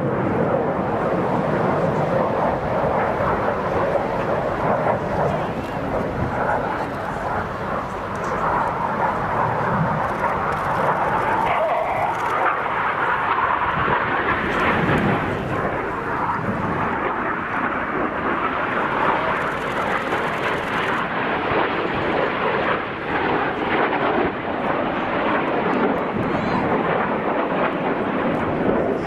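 Jet noise from a BAE Hawk T1's Adour turbofan as the display jet flies past: a steady, loud rushing drone with no sharp rise or fall.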